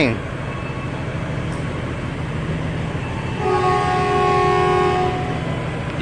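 Horn of a KRL Commuter Line electric train sounding one steady chord of several tones for about two seconds, starting about halfway through, as the train readies to depart. A steady low hum of the station and standing trains runs beneath.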